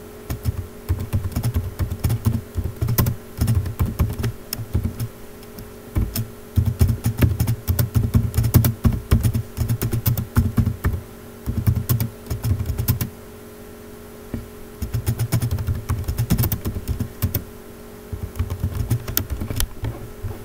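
Typing on a computer keyboard: quick runs of key clicks in bursts of a few seconds with short pauses between, over a faint steady hum.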